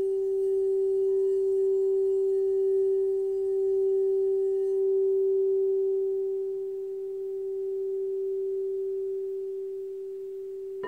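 Frosted crystal singing bowl singing one steady low tone with fainter overtones, played by rubbing a wand around its rim for about the first five seconds. The wand then lifts away and the tone rings on, slowly fading.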